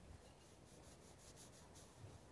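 Near silence: faint outdoor background with light rubbing noise from the handheld phone.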